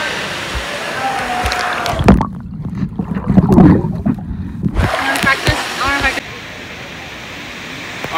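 Rushing, splashing water at the surface of a pool; about two seconds in the phone goes under with a splash and for about two and a half seconds the sound turns muffled, low sloshing underwater, then it comes back up to open-air water noise with distant voices.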